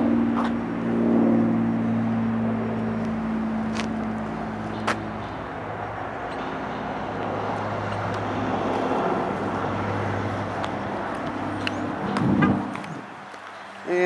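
A steady, low motor-vehicle engine hum with outdoor lot noise, marked by a couple of faint clicks. The hum drops away about a second before the end.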